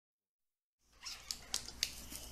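Handling noise from a homemade blaster built of popsicle sticks and a balloon-pump plunger as its plunger is drawn back: faint rubbing with a short squeak, then three sharp clicks about a quarter-second apart.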